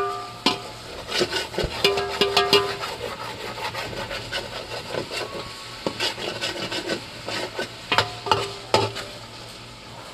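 A spatula stirring chicken pieces in a metal pot, scraping and clicking irregularly against the pot, over the sizzle of the sautéing meat.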